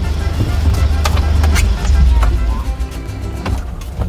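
A Hyundai truck's engine idles, heard inside the cab. A heavy low rumble swells in the first half and is mixed with knocks from people moving about in the seats.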